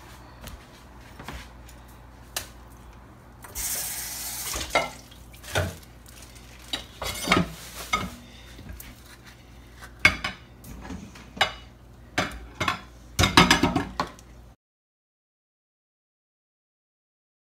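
A metal spoon scooping and scraping avocado flesh from its skin, with scattered clicks and knocks of utensils. There is a short rasping scrape about four seconds in and a cluster of knocks near the end, then the sound cuts off abruptly.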